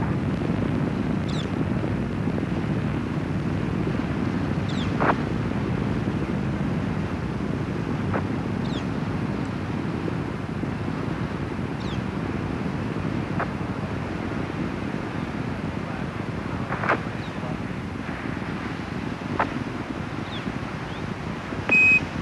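Steady low rumble of Space Shuttle Columbia's solid rocket boosters and main engines heard from the ground, fading slowly as the shuttle climbs away, with a few faint clicks. A short high beep right at the end is a Quindar tone on the NASA radio loop, keying a transmission from Mission Control.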